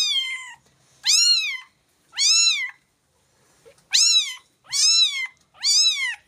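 Domestic cat meowing over and over: five meows about a second apart with a short pause near the middle, each rising and then falling in pitch.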